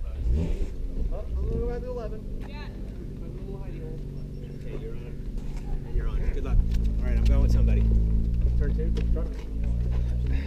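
Car engine idling steadily, getting louder about six and a half seconds in, with voices in the background.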